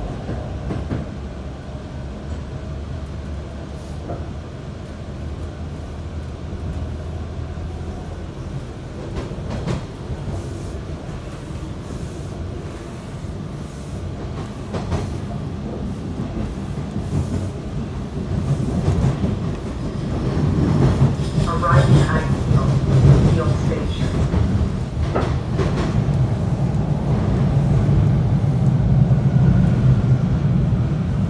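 TTC Line 2 subway train (T1 car) running on the rails, heard from inside the car: a steady low rumble that grows louder about two-thirds of the way through.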